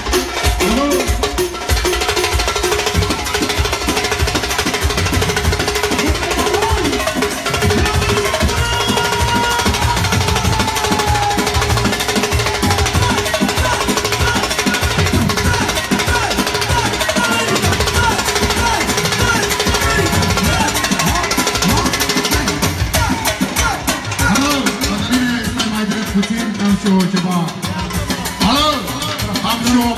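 Live manele band playing loud and fast: electronic keyboard melody over dense, rapid drumming, with crowd voices mixed in.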